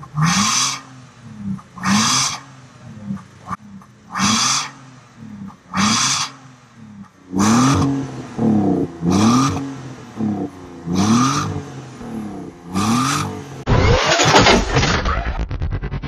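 BMW E60's engine through an aftermarket valved exhaust, blipped to rev about eight times in a row, each rev rising and falling in pitch. Near the end a loud outro jingle takes over.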